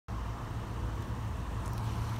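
Steady low hum of a vehicle engine running, with outdoor background noise.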